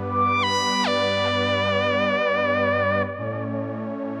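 Nord Stage 4 keyboard playing a lead/pad split preset: sustained synth pad chords underneath a single-note synth lead. The lead runs up in quick steps, drops, then holds one long note with vibrato, and about three seconds in the lead stops as the pad moves to a new chord.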